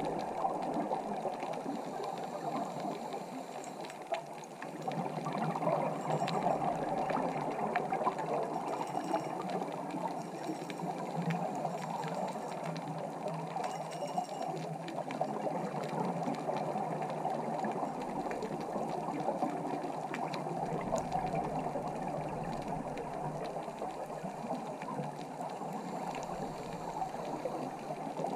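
Steady muffled rush of water heard underwater through a camera housing on a reef dive.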